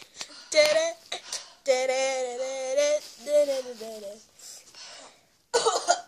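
A child's voice making wordless vocal sounds: a short shout, then a long held note for about a second, then a shorter falling one. A loud rough burst comes near the end.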